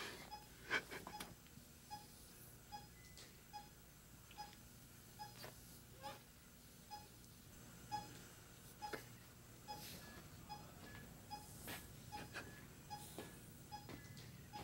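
Faint, steady beeping of a bedside heart monitor, one short high beep about twice a second, marking the patient's heartbeat.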